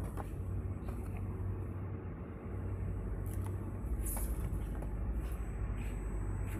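Tamper-evident labeling machine running: a steady low hum from its motors and conveyor, with a few light clicks and a short hiss about four seconds in.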